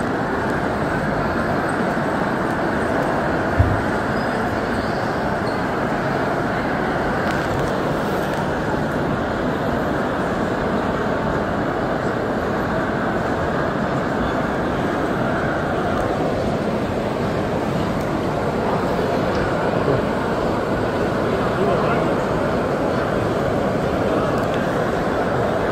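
Steady, indistinct background hubbub of distant voices mixed with a constant hum of hall noise. There is a single short thump about three and a half seconds in.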